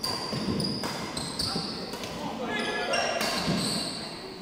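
Badminton rally: several sharp racket strikes on the shuttlecock and sports shoes squeaking on a wooden court floor, echoing in an indoor hall. A player's voice calls out briefly in the second half.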